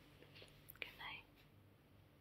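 Near silence, with a faint mouth click about a second in, followed by a brief soft whisper-like breath from a woman close to the microphone.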